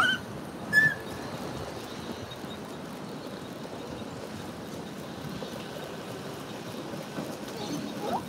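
Steady outdoor background noise during a walk with a pram, broken about a second in by one short, high-pitched squeal.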